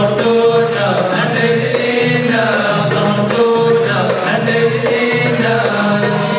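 Folk troupe of men singing a chant together over a steady musical accompaniment.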